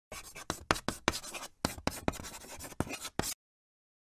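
Chalk writing on a chalkboard: a quick run of scratchy strokes and sharp taps that stops abruptly about three seconds in.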